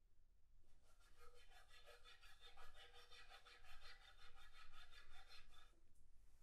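Toothbrush bristles scrubbing quickly back and forth on a sheet of paper, several strokes a second, faint. The scrubbing starts just under a second in and stops just before the end.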